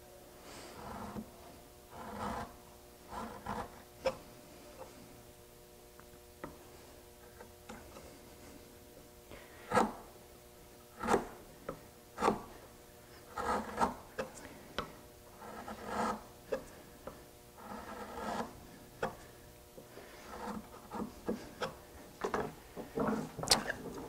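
Chisel paring wood to trim a hand-cut through dovetail joint for fit: irregular scraping strokes with a few sharper knocks about ten to twelve seconds in.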